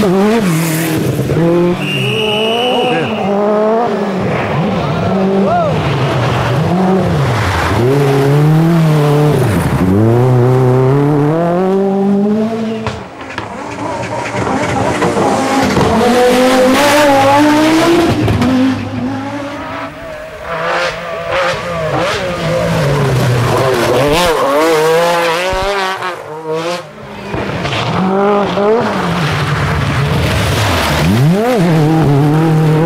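Group B rally cars, including the Peugeot 205 T16 and the Audi Sport quattro, racing past one after another, each engine revving hard and changing gear, so the note climbs and falls again and again.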